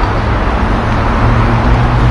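City street traffic: cars and buses running on the road close by, a steady low engine rumble that swells a little about a second in.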